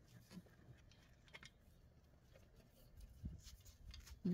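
Near silence, with a few faint ticks and a soft low bump about three seconds in: metal trellis poles and a bent-wire clip being handled and fitted together.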